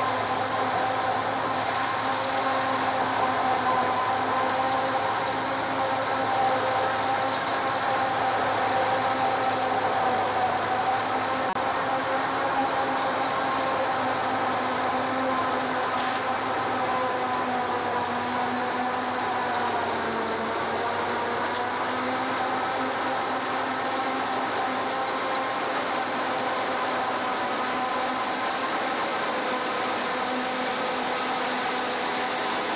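Self-propelled forage harvester chopping standing maize, running steadily with a constant hum of several tones. The pitch dips briefly about two-thirds of the way through, then recovers.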